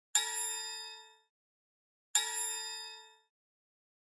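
Two bell-like chime strikes about two seconds apart, each ringing out and fading within about a second.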